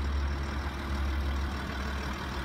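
Ford Territory Titanium SUV's engine idling steadily, heard from outside the car as a low, even hum.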